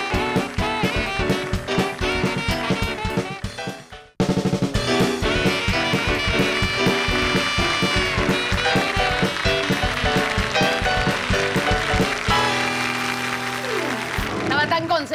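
Upbeat music with a steady beat breaks off abruptly about four seconds in, and a swing-jazz tune from a small band of saxophone, drum kit and keyboard starts at once. It ends on long held notes near the end.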